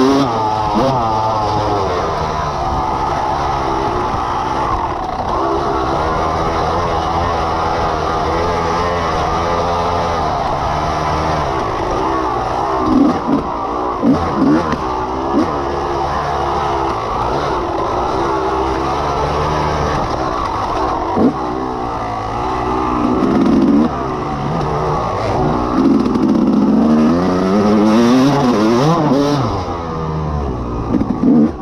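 Dirt bike engine revving under hard riding, its pitch rising and falling constantly with throttle and gear changes. A few sharp knocks come near the middle, and the engine surges louder toward the end.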